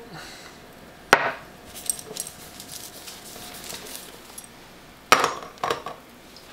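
Small glass set down on a wooden workbench with a sharp knock about a second in, then a few faint light clinks, and two more knocks near the end, as tools are handled while coating paper with platinum-palladium emulsion.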